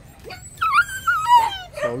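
Phu Quoc puppy whining in high, wavering cries for about a second, the pitch sliding down at the end.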